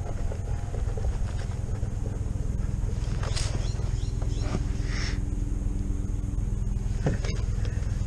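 King Song S18 electric unicycle ridden over a rough dirt trail: a steady low rumble of tyre and wind noise with a faint steady hum from the hub motor. Light clicks and rattles come through now and then, the sharpest about seven seconds in.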